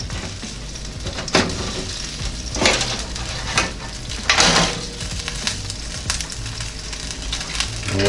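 Metal tongs and a wire air-fryer crisper tray clinking and scraping as a cooked chicken breast is lifted off and the tray is handled. There are a few separate knocks, the loudest about four seconds in, over a steady hiss.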